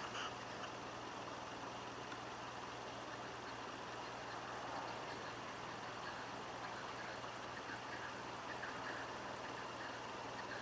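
Faint, steady, distant engine rumble with a low hum.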